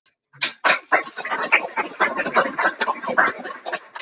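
A small audience applauding: a dense patter of hand claps that starts about half a second in and thins out near the end.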